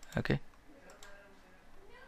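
Two faint computer mouse clicks about a second in, following a spoken "okay".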